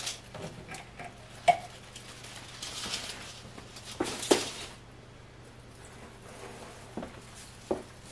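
Rustling and handling of an artificial leaf wreath taken off a door, with a few sharp knocks and clicks. The loudest click comes about a second and a half in, and two more come together around the middle.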